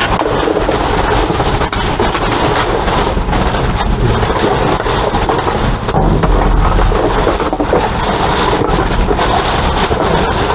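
Plastic trash bags rustling and crinkling as they are handled close to the microphone, with a steady low rumble underneath.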